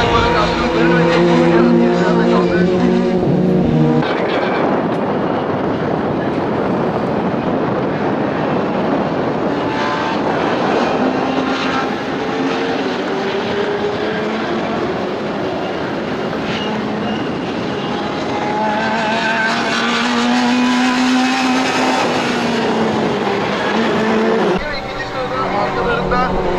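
Fiat Punto Abarth race car engine revving hard on track, its note climbing and dropping with gear changes. From about four seconds in there is several seconds of rushing noise.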